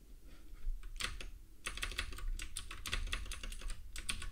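Typing on a computer keyboard: a quick, irregular run of key clicks starting about a second in.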